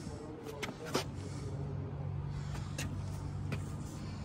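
Sneakers stepping along a fiberglass boat deck, a few light taps, the sharpest about a second in, over a steady low machine hum that starts about a second in.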